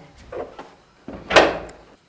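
A door shutting with a single short thud about halfway through, with a fainter knock shortly before it.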